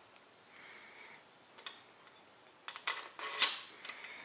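Light metal clicks and taps as a rocker arm is set onto its stud and the adjustable pushrod-length checking tool on a small-block Chevy cylinder head. One faint click comes first, then a quick cluster of sharper clicks about three seconds in.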